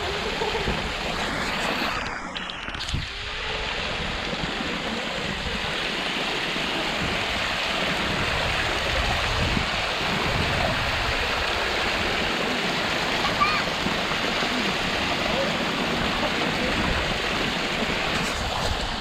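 Spring water gushing from a cluster of outlet pipes and splashing steadily into a concrete basin.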